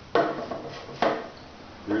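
Two sharp metal clanks about a second apart, each ringing briefly: the steel bead-breaker lever and arm of a Semel Baby-E kart tire changer being swung and set into place against the tire.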